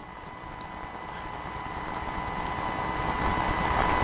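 Steady hiss and electrical hum with a thin high tone, gradually growing louder.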